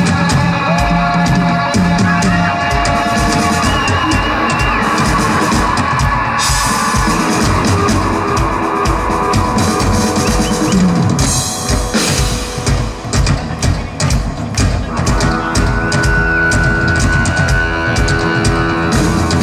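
A live rock band plays an instrumental passage: a Sonor drum kit keeps a steady beat under long, held electric guitar notes. About twelve seconds in the playing thins to scattered drum hits for a couple of seconds, then the band comes back in full with a new sustained note.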